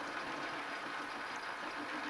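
Metal lathe running steadily at turned-down spindle speed, with a push-type knurling tool's wheels still rolling on the tapered workpiece as the tool is backed off.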